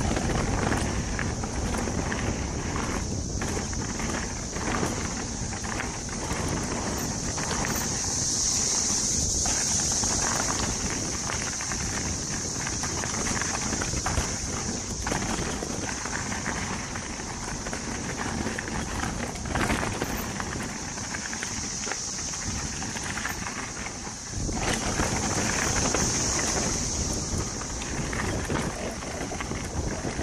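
Mountain bike descending a rocky dirt downhill trail at speed: tyres rolling over dirt and rock and the bike rattling, with wind rushing on a chin-mounted microphone. A steady high-pitched buzz runs underneath and swells twice.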